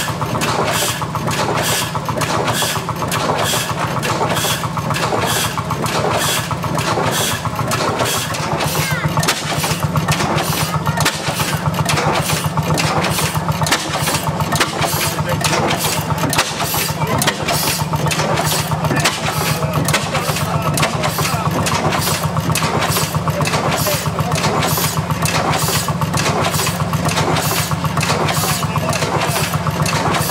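Large National horizontal single-cylinder stationary gas engine running on wood-derived producer gas, its slow working strokes and valve gear beating in a regular rhythm of about three beats a second. About nine seconds in the beat quickens a little and grows louder as the engine picks up revs.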